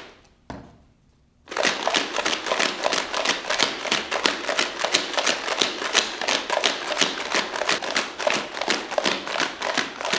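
Rocks and water rattling and sloshing inside a small plastic bottle shaken hard and fast, about five shakes a second, the stones knocking against each other and the bottle walls. A short pause about a second in, then steady rapid shaking.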